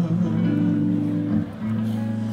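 Live band music: electric guitars hold a sustained chord over a low bass note, which drops out briefly about one and a half seconds in and then resumes.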